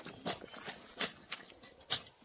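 Hoe chopping into soil and weeds as the ground around young coffee plants is scuffled clear: three separate strokes, the last and loudest near the end.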